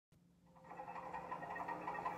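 Cartoon soundtrack playing faintly from a television speaker, fading in about half a second in, over a steady low hum.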